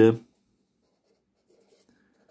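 Marker pen writing a word on notebook paper: faint, short strokes from about half a second in.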